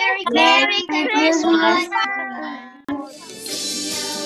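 Children singing together for about three seconds, then a sharp click, after which background music starts.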